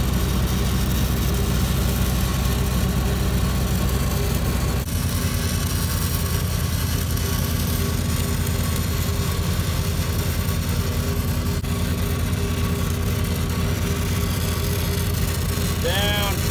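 Engine-driven welding machine running steadily under load, its note changing about five seconds in, with the hiss and crackle of a stick-welding arc on steel pipe.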